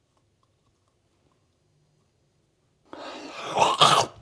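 Near silence for about three seconds, then a man's loud, rising gagging groan of disgust at the foul taste of a chewed miswak stick.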